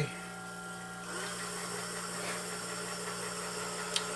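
Hornady electronic powder dispenser running on its slowest speed, its motor humming steadily as it trickles out a charge of Hodgdon Longshot powder; a steady hiss joins the hum about a second in.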